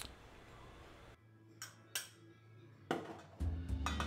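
A few light clinks of a fork and small bowl against a stainless steel mixing bowl as beaten egg is poured into ground meat, with faint background music.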